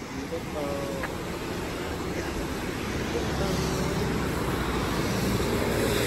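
A car approaching on the road, its low rumble growing louder over the second half, over a steady rush of river rapids.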